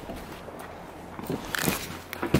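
Footsteps crunching on snow, with a few sharper crunches about one and a half seconds in.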